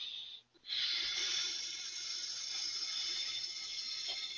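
A man breathing slowly and deeply through a meditative trance: a brief break about half a second in, then a long, hissing breath that slowly fades.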